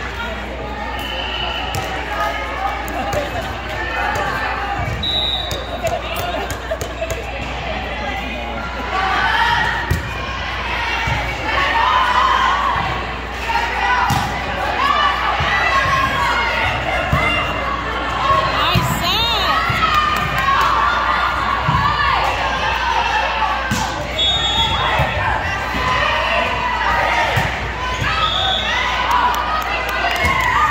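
Volleyball rallies in a large gym: the ball struck and hitting the hard court in scattered sharp thuds, over continuous chatter and calls from players and spectators.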